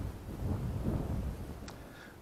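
Low, uneven rumble of wind buffeting the microphone of a hand-held action camera, with one faint click near the end.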